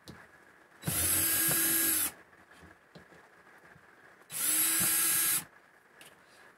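Cordless drill/driver run in two bursts of about a second each, backing out screws to take down an RV microwave's mounting bracket.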